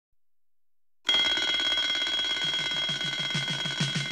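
Twin-bell mechanical alarm clock ringing loudly and steadily, starting about a second in. A rapid low pulsing joins it about halfway through.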